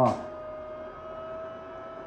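Steady electric hum with a constant mid-pitched tone, from the welding helmet's battery-powered air blower turned up.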